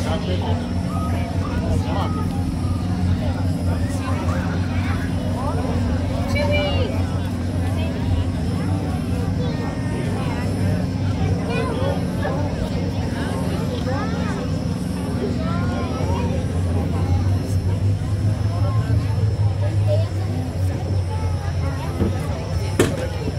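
Many people talking at once over a constant low mechanical hum, with scattered individual voices rising out of the crowd chatter.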